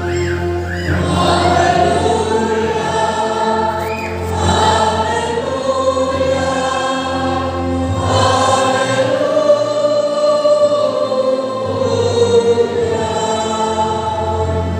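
A church congregation singing a hymn together in long, slow held notes over steady low bass notes.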